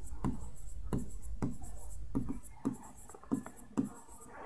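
Writing on a blackboard: a quick series of short separate strokes, about ten in all, as small circles are drawn one after another.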